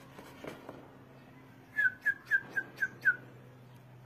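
Six short whistled chirps in quick succession, each falling slightly in pitch, about four a second, starting a little before the middle.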